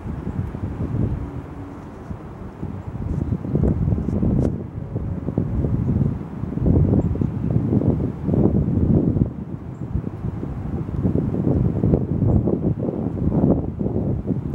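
Wind buffeting the microphone, a low rumble that rises and falls in gusts.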